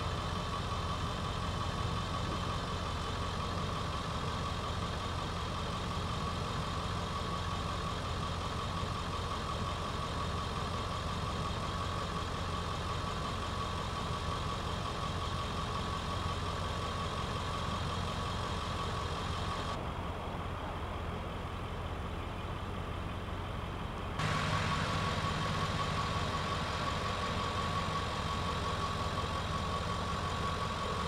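Vehicle engine idling steadily with a constant high whine over a low hum. The sound changes abruptly about 20 seconds in and again about 24 seconds in.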